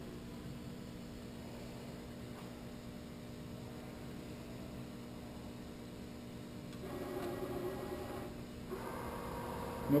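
Clausing Kondia CNC knee mill running a bolt-hole program: a steady low machine hum, with a louder pitched whine from about seven seconds in for a second and a half as a powered axis drives the table or head to the next position.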